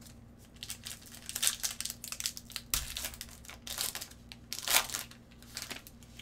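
Clear plastic wrapper crinkling in irregular bursts as nitrile-gloved hands open it and slide a trading card out, loudest near the end.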